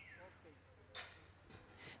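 Near silence: faint outdoor background with a low steady hum, and one faint short pop about a second in.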